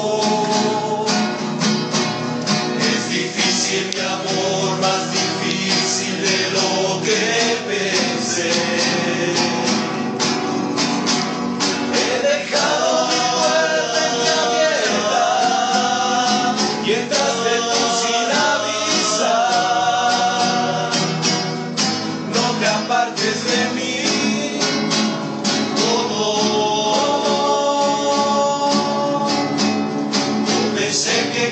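Rondalla performing live: acoustic guitars strummed in a steady rhythm with male voices singing a romantic ballad in harmony.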